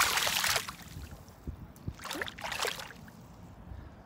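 A tilapia splashing into the water as it is released, with a loud splash at the start and smaller splashes and sloshing about two seconds in.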